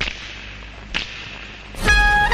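Recorded dance-mix backing track: two sharp cracks about a second apart, then a tune of held notes begins near the end.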